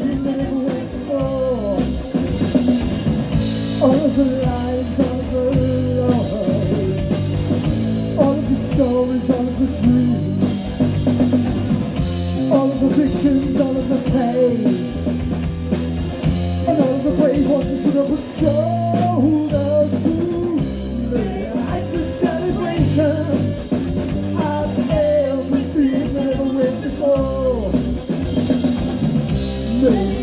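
Live punk rock band playing: electric guitar, electric bass and a drum kit driving along, with singing over the top.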